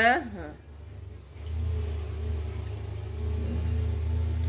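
Low, steady hum of a motor, like a vehicle engine running nearby, that comes in about a second and a half in and slowly grows louder.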